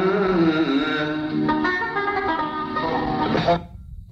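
Live Arabic music led by a plucked string instrument, first wavering in pitch and then playing a stepped melodic phrase. The playing breaks off abruptly near the end into a brief lull.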